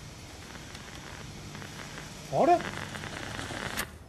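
A faulty flat-screen TV giving off a steady crackling hiss that cuts off with a sharp click near the end: the set has just broken down. A man says a short 'huh?' about halfway through.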